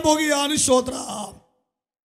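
A man's voice preaching through a microphone, trailing off about a second and a half in and then cutting to dead silence.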